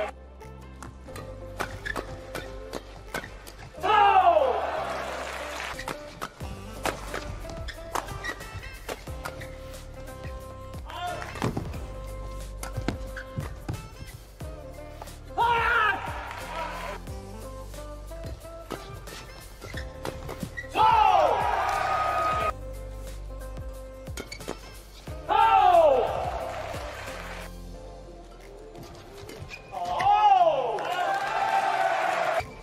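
Men's doubles badminton rallies: rapid sharp racket strikes on the shuttlecock and shoe squeaks. Loud shouts from the players come four times, about 4, 15, 21 and 25 seconds in, as points are won, over low background music.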